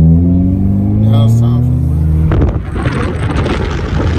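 2008 Honda Civic Si's 2.0-litre four-cylinder engine heard from inside the cabin, its revs climbing steadily as the car accelerates. About two seconds in this gives way to a loud rush of wind on the microphone from a moving car with its window open.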